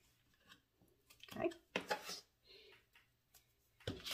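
Faint handling noises of double-sided score tape being pulled from its roll and pressed onto cardstock: a few short rustles and ticks around the middle, otherwise quiet.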